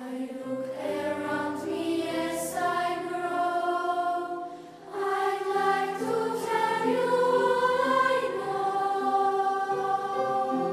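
Youth choir singing in several voice parts, holding sustained chords, with a short break between phrases about halfway through.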